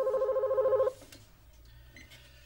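Telephone ringing once with a warbling, trilling electronic ring lasting about a second, then stopping.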